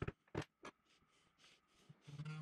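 A few light knocks and clicks of a wooden workpiece and a portable drill press guide being handled and set in place, all in the first second, then almost nothing.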